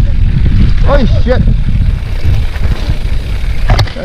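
Heavy wind noise on the microphone of a mountain bike descending a rough dirt trail, with the bike rattling and sharp knocks as it hits bumps and rocks. A short voice call comes about a second in.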